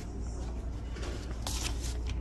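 A short rustling scrape about one and a half seconds in, over a steady low room hum.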